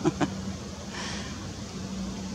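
A short vocal sound just after the start, then a steady low hum under faint outdoor background noise.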